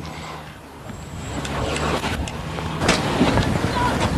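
Low rumble of road traffic, swelling over the first couple of seconds, with a few scattered knocks.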